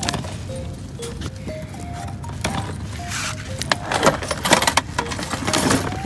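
A plastic tackle box being opened: clicks of its latches and a rattle of plastic trays and tackle, busiest in the second half. Background music with a simple melody plays underneath.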